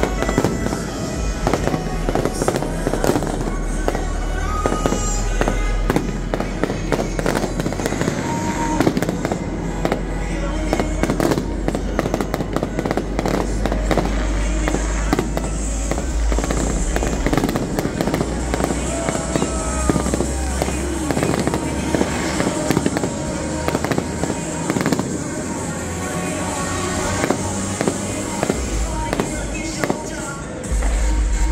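Fireworks display going off in quick succession: many sharp bangs and crackling bursts following one another without a break.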